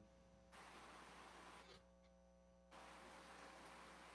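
Near silence: a faint hiss over a low steady hum. The hiss cuts out for about a second in the middle and then comes back.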